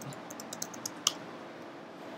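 Computer keyboard typing: a quick run of keystrokes, then one louder keystroke about a second in.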